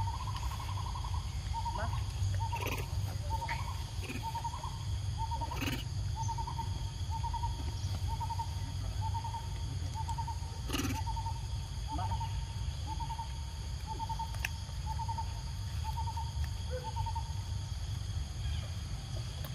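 A bird repeating one short, mid-pitched note, evenly spaced about one and a half times a second, stopping near the end. Under it runs a steady low rumble, with a few sharp clicks.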